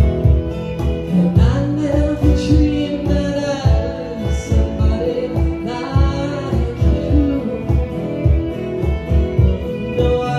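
A live country band playing a slow song: fiddle and guitars over a steady low beat, with a voice singing.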